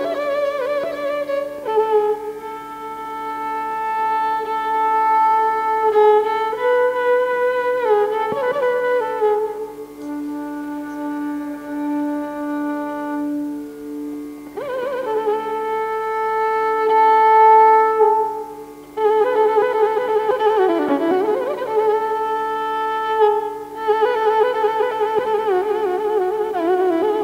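Carnatic violin playing a slow passage in raga Kalyani: long bowed notes with sliding and oscillating ornaments over a steady drone, with a brief break about three-quarters of the way through.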